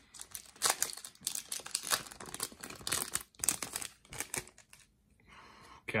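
A foil trading-card booster pack being torn open and crinkled by hand: a rapid run of crackling rustles for about four and a half seconds, fading near the end.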